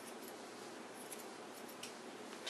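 Grooming scissors snipping a miniature schnauzer's coat: a few faint, crisp snips, two near the start, one about a second in and two near the end.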